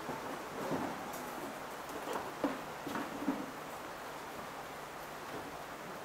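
Quiet room background with faint rustling and a few light knocks and clicks about two to three seconds in.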